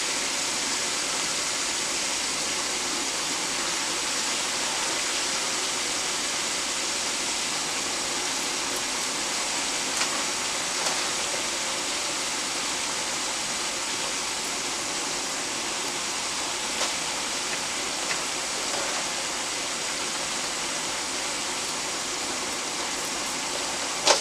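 Diced eggplant and onion frying in hot oil, just added to the pot: a steady sizzle with a few sharper crackles.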